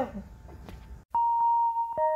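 Low room tone, then after a short cut about halfway through, background music begins with a single held chime-like tone.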